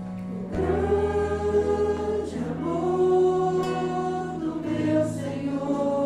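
A group of voices singing a slow Portuguese hymn together over a live church band with bass guitar, coming in about half a second in on long held notes.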